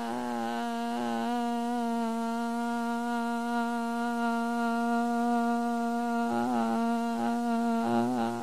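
A person humming one long held note at a steady pitch, wavering briefly near the start and again about six seconds in.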